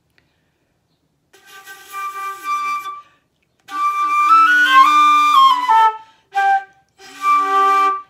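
Concert flute played with the tongue high in a saxophone-style 'E' position rather than an open 'O', shown as the contrast to a resonant flute tone: after a short silence, a held note, a run of notes stepping up and back down, a short note, then another held note.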